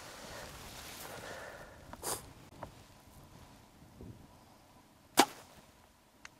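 A bow shot at a bull caribou: a single sharp, loud crack about five seconds in. It is the shot that hits the bull. A shorter, softer noisy burst comes about two seconds in.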